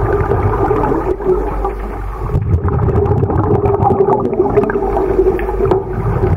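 Muffled underwater rumble and gurgling picked up by a submerged camera in its housing, with a steady hum running under it and scattered small clicks and ticks.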